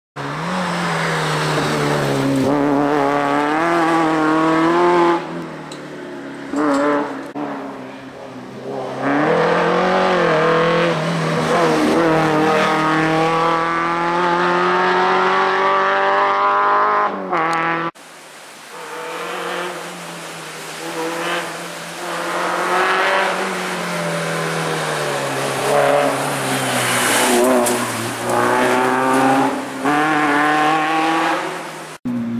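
Peugeot 309 GTI 16 rally car's engine revving hard, its pitch climbing through each gear and dropping at every shift or lift for a corner. About two-thirds of the way through, the sound cuts off abruptly and picks up on another fast run.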